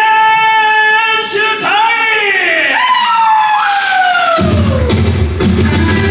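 A woman singing solo through a stage microphone: a long held note, then swooping runs that slide down in pitch, ending in a long falling note. A rock band's bass and drums come in about four and a half seconds in.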